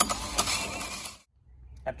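Cordless drill driving a 5-inch hole saw through the plastic wall of a rainwater tank: a loud, harsh cutting noise that starts suddenly and stops abruptly about a second in.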